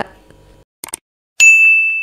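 Two quick mouse-click sound effects just under a second in, then a single bright notification-bell ding that rings on and fades slowly.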